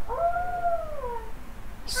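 A single whine-like tone, about a second long, that rises briefly and then glides slowly down.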